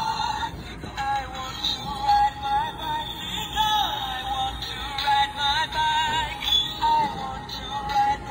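Gemmy Easter Tricycle Riding Bunny animated plush toy playing its song: a high-pitched synthetic sung tune through the toy's small speaker.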